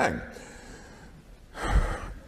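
A man's voice ends a word, then a short pause of faint room tone. About a second and a half in comes a quick, sharp intake of breath close to the microphone, with a low pop.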